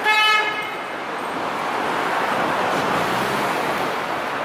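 A vehicle horn honks once at the start: a single short blast of about half a second, the loudest sound here. Steady city street traffic noise runs under it and on after it.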